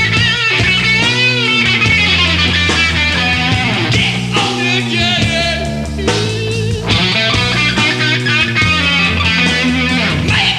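A live grunge rock band playing loud, with electric guitar, bass and drums, and a high melodic line that wavers and bends in pitch over steady, changing bass notes.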